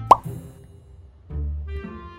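Background music with low bass notes and a woodwind-like melody, with a short, loud, upward-gliding "plop" sound effect just after the start.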